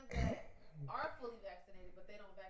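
A man briefly clears his throat close to the microphone just after the start, followed by faint, low talk.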